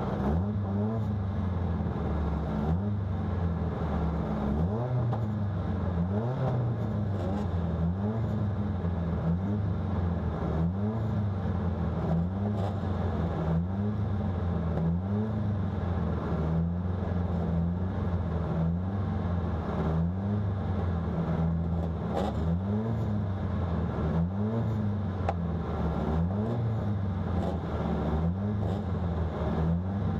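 Car engine idling, heard from inside the cabin, with a small rise in pitch repeating every two seconds or so.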